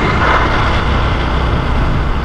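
Loud, steady wind noise buffeting the microphone: a low rumble with a hiss over it.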